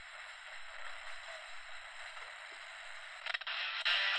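Steady hiss of FM static from the small speaker of a Vigurtime VT-16 DIY AM/FM radio kit, with a few clicks a little over three seconds in and the hiss growing louder near the end.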